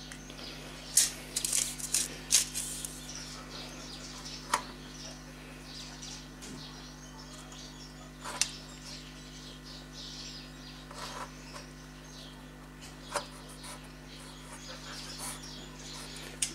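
Scattered light clicks and taps, about nine in all, from a steel tape measure and a marker handled against a thin sheet-metal can as holes are measured and marked, over a steady low hum.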